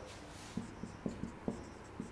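Marker pen writing on a whiteboard: a run of faint, light taps and short strokes, starting about half a second in.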